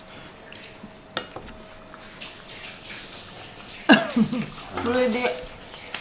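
Faint clicks of a knife and fork on a wooden cutting board as a cooked steak is sliced. A short vocal sound, sudden and falling in pitch, comes about four seconds in, and another brief voice sound follows about a second later.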